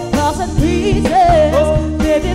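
A woman singing into a handheld microphone over a live band, with vibrato on her held notes, a steady bass line and a regular drum beat.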